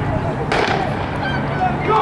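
Starting gun fired once, a sharp crack about half a second in with a short echo, starting an 800 m race; spectators talk in the background.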